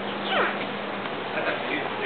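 A young child's brief high vocal squeal that slides down in pitch, about a third of a second in.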